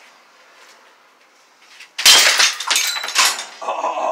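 A yo-yo smashed so hard that it breaks apart. A sudden loud crack about two seconds in is followed by pieces clattering for about a second, leaving only the axle.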